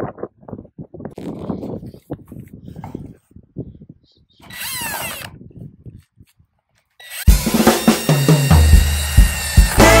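Cordless drill spinning up on sheet-metal flashing with a rising whine for about a second, near the middle. About seven seconds in, loud music with a heavy bass comes in and drowns everything else.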